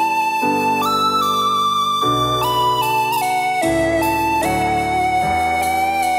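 Software-synth lead melody playing back over sustained synth chords that change about every second and a half. Its longer notes carry a gentle vibrato and inverted-phase tremolo from the MVibrato plugin, switched on for parts of each note so the line sounds more like a played instrument.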